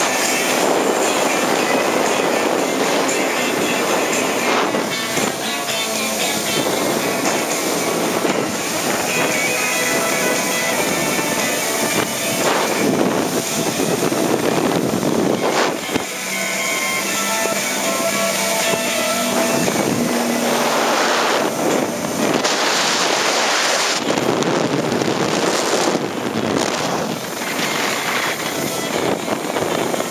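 Personal watercraft running at speed over water, its engine and spray mixed with wind on the microphone, with music playing over it.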